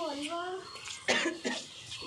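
Quiet voices: a brief murmured phrase, then a short cough about a second in.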